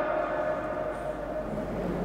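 A pause between a man's spoken sentences, filled by a steady faint ringing tone that fades slowly.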